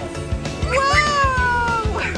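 A toddler's single high-pitched squeal, rising briefly and then slowly falling, lasting about a second, over background music with a steady beat.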